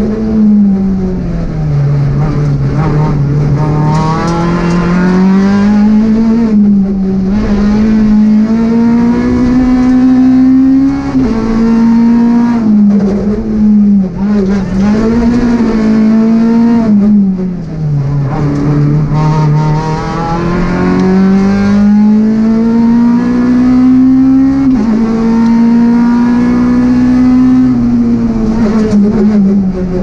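Peugeot 208 R2 rally car's 1.6-litre four-cylinder engine at full stage pace, heard from inside the cockpit. The revs climb hard and then drop sharply several times as the driver shifts between second and third gear and brakes for corners.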